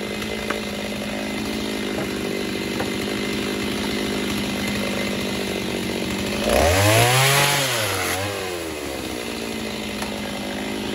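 A two-stroke gas chainsaw idles steadily, then about six and a half seconds in it revs up for a short cut into the slabs in the rack. The engine note rises and falls over about one and a half seconds before dropping back to idle.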